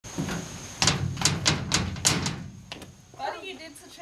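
A toddler's feet stamping on a metal bulkhead cellar door: about five hollow bangs in quick succession, followed by a voice near the end.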